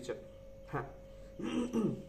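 A man's brief wordless vocal sounds in a pause between sentences: a short sound just before halfway, then a short hum-like vocal sound falling in pitch in the second half, over a faint steady hum.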